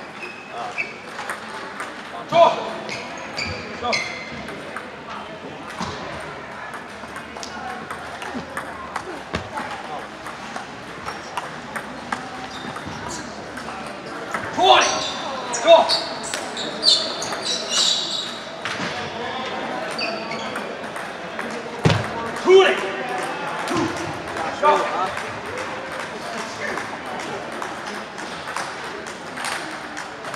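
Table tennis balls clicking off paddles and tables in a large hall, a scattered patter of sharp ticks from many tables at once. Voices rise over it in the middle stretch.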